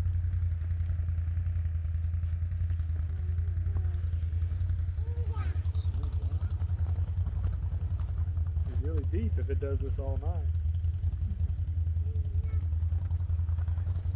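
Wind buffeting the phone's microphone in a snowstorm: a steady low rumble with a fast flutter. Faint voices come through now and then, briefly.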